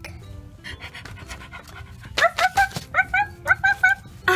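A puppy panting, a quick string of short, high pants beginning about two seconds in, over background music.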